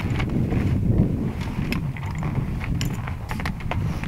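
Wind rumbling on the microphone, with a few scattered light clicks and rustles of small parts being handled.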